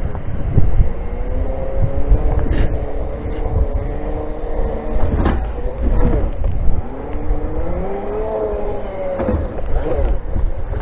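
Segway's electric drive motors whining, the pitch rising and falling as it speeds up and slows down, over wind rumble on the microphone. A few sharp knocks come through as the wheels go over bumps.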